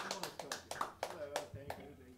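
A few scattered hand claps dying away, over quiet talking.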